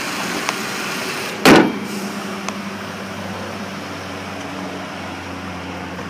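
2007 Ford Taurus SE's 3.0-litre V6 idling steadily after start-up, with a single loud thump about one and a half seconds in.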